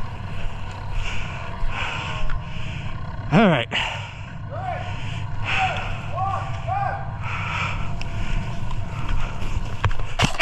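Steady rustle and handling noise from a camera worn by an airsoft player moving across grass. A short falling pitched sound comes about three and a half seconds in, and a few brief chirp-like tones follow.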